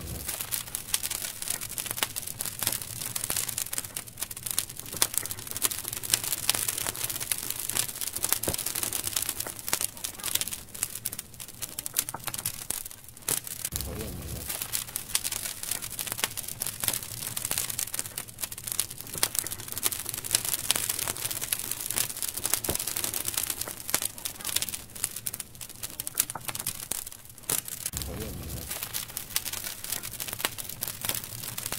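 Bonfire of dry twigs and brushwood crackling and popping densely and without pause, over a steady hiss. A brief low rumble comes about halfway through and again near the end.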